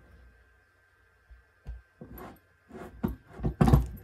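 A steel ring stretcher/reducer press being handled and worked: a few irregular knocks and clunks starting about a second in, the loudest near the end.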